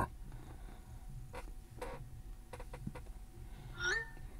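A few faint clicks, then near the end a short rising whoosh from an Apple Watch Series 8: the iMessage sent sound as a dictated message goes out.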